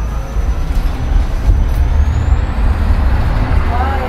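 Ride inside a moving electric shuttle bus: a steady low rumble of the ride and road, with a thin, high electric-drive whine that climbs in pitch about halfway through.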